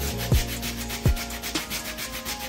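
Brush scrubbing a wet, soapy sneaker insole: a steady, dense scratchy rasp of bristles. Background music runs underneath, with a couple of deep falling bass hits as the loudest peaks.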